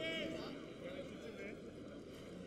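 A man speaking in short phrases over steady stadium crowd noise.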